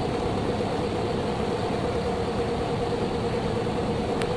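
Beechcraft Sundowner's four-cylinder Lycoming engine and propeller running steadily at reduced power on final approach, heard from inside the cabin as an even drone.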